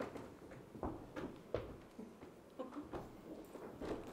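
A few soft footsteps and light knocks in a quiet room as someone steps forward, with faint murmured voices.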